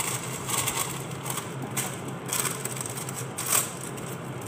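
Paper being handled, rustling and crinkling in irregular bursts, with one louder crinkle near the end.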